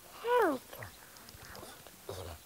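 A single short vocal call, about half a second long, that slides down in pitch.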